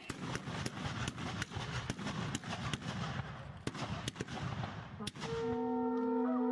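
Ragged volley of black-powder matchlock muskets firing many shots in quick, irregular succession. About five seconds in the shooting stops and a long, steady horn note begins.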